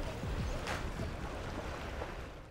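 Outdoor sea-surface ambience: water moving and wind on the microphone as a steady rushing noise, with one brief splash about two-thirds of a second in.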